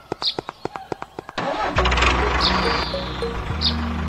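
Rapid, even clicking for about the first second and a half, then a dubbed tractor engine sound starts with a sudden burst and settles into a steady low running hum. Light background music with short chirping notes plays throughout.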